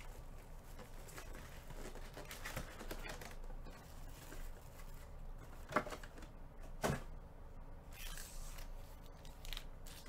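Foil trading-card packs being handled and set down on a table: light crinkling and rustling with scattered soft knocks, and two sharper knocks a little past the middle.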